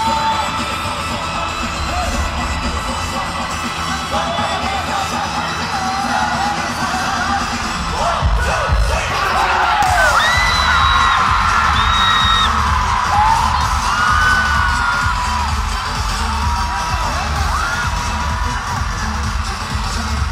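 Live pop concert music with a steady pulsing bass beat, mixed with yells and cheers from the crowd. About halfway through, high held notes and sliding calls come in over the beat.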